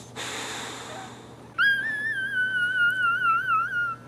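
A breathy exhale, then about a second and a half in a newborn Boxer puppy's long, high-pitched whine that wavers in pitch for a couple of seconds and stops just before the end.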